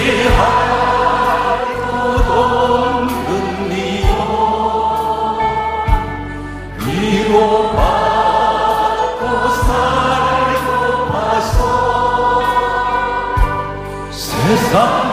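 A man singing a slow Korean gospel song into a microphone over band accompaniment, with a low drum beat about every two seconds and a brief pause between phrases a little past the middle.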